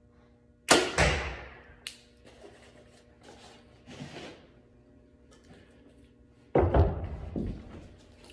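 A compound bow shot fired with a back-tension release: a sudden loud string release and arrow launch less than a second in, with a sharp click about a second later. Softer handling noises follow, then a loud knocking and rustling near the end.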